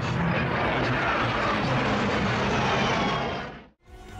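Jet engine noise of a Saab JAS-39 Gripen fighter flying past: a steady, dense rushing noise with a faint falling whine, which dies away quickly near the end.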